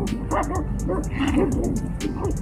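A large black dog and a wolf fighting, with a string of short snarls and yelps that rise and fall in pitch, several each second.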